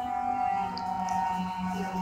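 Sustained musical drone from improvised live accompaniment: a low held tone that swells and dips slightly under steady higher tones, with an eerie, whale-like or theremin-like quality.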